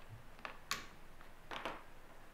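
Faint clicks of a knife blade and pliers against boiled chestnut shells on a wooden cutting board: one sharp click just under a second in and a pair of softer ticks past halfway.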